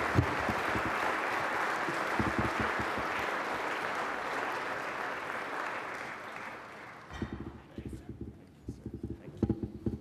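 Audience applauding, the clapping dying away about seven seconds in. Under it a small live band with cello and double bass plays a walk-up tune, its short low notes coming through clearly once the clapping stops.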